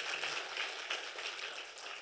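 Congregation applauding, a faint patter of many hand claps that dies away near the end.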